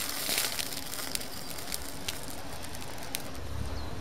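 Magnesium burning on a block of dry ice: a steady hiss with scattered sharp crackles as sparks fly.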